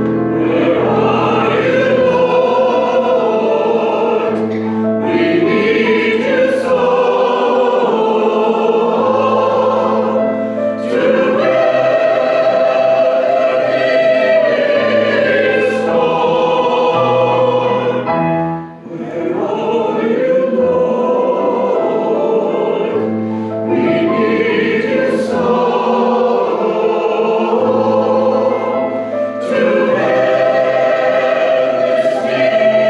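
A mixed choir of men's and women's voices singing a church anthem in sustained chords, with a short break between phrases about two-thirds of the way through.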